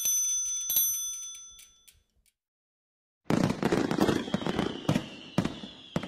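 A bell-like chime rings out and fades away over about two seconds. After a second of silence comes a fizzing, crackling sound effect of a lit fireworks fuse, full of sharp pops, with a faint high whistle that slowly falls.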